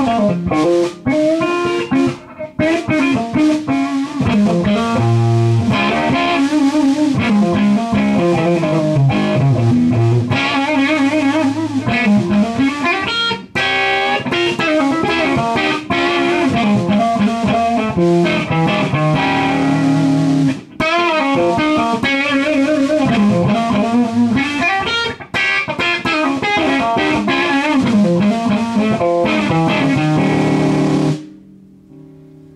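Electric guitar played through a small tube amplifier running on a homemade solid-state rectifier in place of its 5Y3 rectifier tube: single-note lines and chords with bent notes, played continuously with only a few brief breaks.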